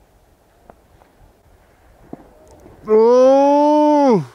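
A person's loud, drawn-out yell, about a second long, holding one pitch that rises slightly and then drops away at the end. Before it there are only faint background noise and a couple of small clicks.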